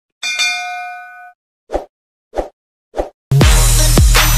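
Subscribe-animation sound effect: a bright bell-like ding that rings and fades over about a second, followed by three short soft pops about 0.6 s apart. Electronic music with a heavy bass beat starts loudly near the end.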